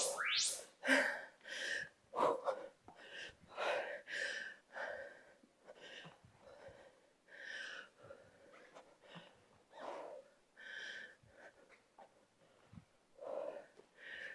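A woman breathing hard from exertion during butterfly crunches: short, forceful breaths, about one or two a second, that grow quieter and sparser.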